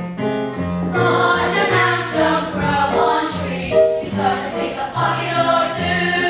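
Live stage-musical music: a group of voices singing over instrumental accompaniment, with a bass line that moves to a new note about every half second.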